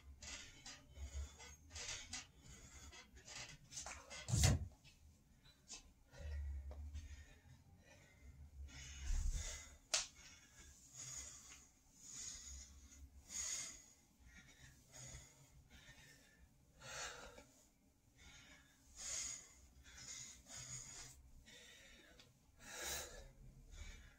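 A man breathing hard from exercise, one forceful breath after another through pull-ups and bodyweight squats. One loud thump comes about four and a half seconds in.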